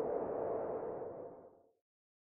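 Intro logo sound effect: an airy whooshing swell carrying a steady tone, fading away about one and a half seconds in.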